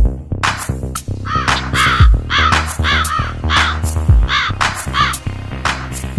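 A crow cawing over and over, about two caws a second, starting about half a second in, over music with steady bass notes and a deep drum hit every two seconds.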